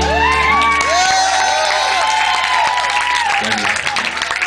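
A held final chord cuts off, and a club audience cheers with high whoops and claps.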